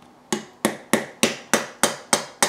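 Small watchmaker's hammer tapping a tin tab on a tin-plate toy locomotive body, six light, evenly spaced taps at about three a second, folding the tab back in tight.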